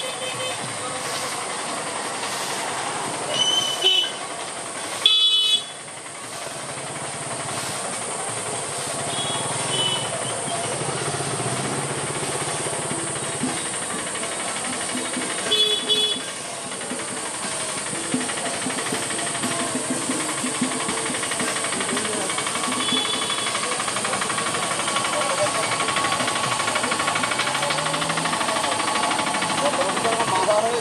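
Outdoor street procession ambience: a steady hiss with people's voices around, broken by several brief high-pitched toots a few seconds apart, the loudest near the start and about halfway through.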